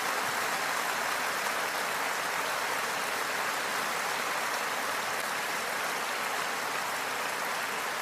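Large audience applauding steadily in a concert hall.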